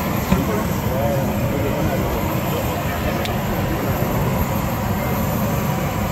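Steady running noise of a parked airliner's engine, with the voices of people gathered around it and a short click about three seconds in.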